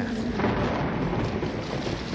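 Storm sound effect: a steady, loud rush of wind and heavy rain with a low rumble underneath.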